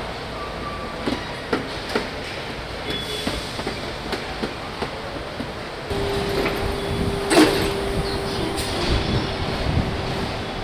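Car assembly-line machinery noise: a steady mechanical hum with scattered clicks and knocks. About six seconds in, it gets louder and a steady tone joins it, with one sharp clank a little later.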